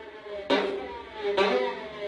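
Violin bowed in hard, accented strokes about a second apart, each starting sharply and then dying away, imitating a motorbike engine revving.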